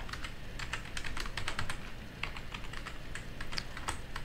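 Typing on a computer keyboard: a steady run of quick, irregular key clicks.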